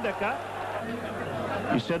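Male television commentator speaking, breaking off for about a second and a half and resuming near the end, with an even stadium crowd murmur underneath and a steady low hum from the old broadcast recording.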